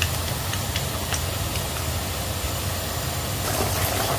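A steady low mechanical hum, with faint scattered ticks and crackles of food frying in a pan.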